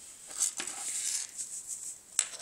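Rustling handling noise, with a sharp click about half a second in, as an object is picked up.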